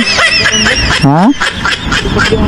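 Men's voices talking, with a short questioning "ha?" that rises sharply in pitch about a second in.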